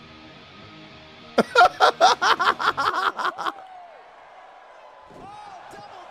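A man laughing hard into a close microphone: a rapid run of about a dozen loud 'ha' bursts, starting about a second and a half in and lasting about two seconds. Faint background music comes before it, and faint arena crowd noise with commentary follows.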